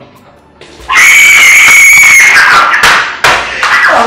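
A woman's loud, high scream that starts suddenly about a second in, is held on one pitch, then drops and breaks into further falling cries.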